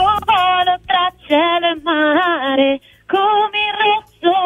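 A woman singing a few lines of her own song over a telephone line. Her voice sounds thin and narrow, as through a phone, in phrases with short breaks between them.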